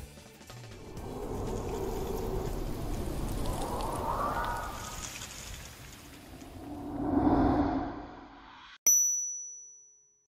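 Outro sound effects: a rushing noise that swells and fades twice, then near the end a single bright ding that rings out and fades evenly, a logo sting.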